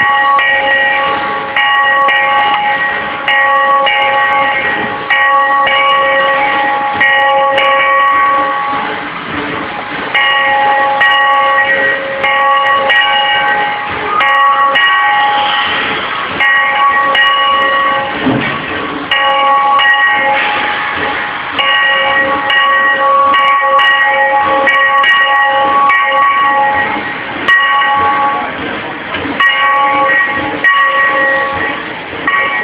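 Steam locomotive bell ringing steadily, struck over and over while the engine moves, with short pauses about nine seconds in and again near the middle.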